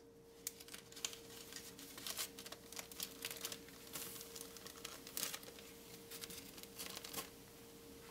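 Plastic zip-lock bag crinkling as it is handled and pressed shut by hand, with a tissue-paper packet inside: irregular crackles and rustles that stop about seven seconds in.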